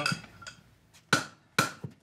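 Farrier's hammer striking a steel horseshoe on an anvil to shape it: a few sharp metallic blows, each with a short ring, spaced unevenly in the second half.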